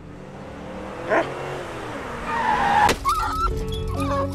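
A car driving and braking hard, its tyres squealing, ending in a sharp knock about three seconds in, as of the car striking something.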